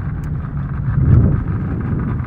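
Small boat's outboard motor running under steady wind on the microphone, with a brief louder low rumble about a second in.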